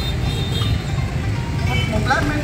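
Busy street-market ambience: a steady low rumble of motorbike traffic and a loudspeaker sound system, with distant voices over it.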